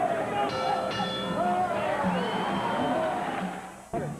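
Indistinct voices talking with a snatch of music, a few held notes about half a second in, fading just before the end.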